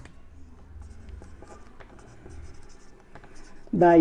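Marker pen writing on a whiteboard: faint scratches and small taps of the felt tip as letters are drawn, over a low steady hum.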